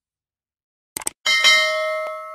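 Subscribe-button sound effect: a few quick mouse clicks about a second in, then a bell ding that rings on and slowly fades.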